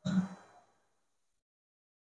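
A man's short, sigh-like breath into a microphone during a pause in speaking, lasting about a quarter of a second, followed by dead silence.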